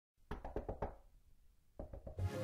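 A quick run of five knocks, about seven or eight a second, then a pause and two more knocks near the end.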